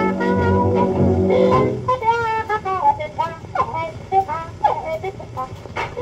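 A 1935 dance-band 78 rpm record playing a blues fox trot. The full band plays for about two seconds, then drops back to a lone muted trumpet that bends and slides its notes until the band comes back in at the end.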